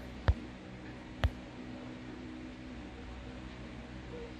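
Two sharp clicks about a second apart, over a low steady hum.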